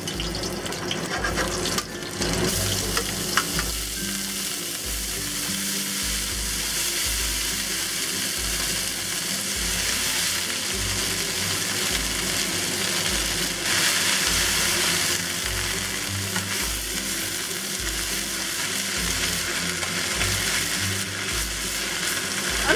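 Hot oil sizzling in a stir-fry pan, first with crushed garlic and then with a pan full of chrysanthemum leaves (tong ho) tossed with steel tongs. The sizzle swells for a moment a little past halfway.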